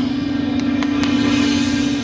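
Shaojiao long brass horns blowing a loud, steady low note in unison. Three sharp cracks sound over it about half a second to a second in.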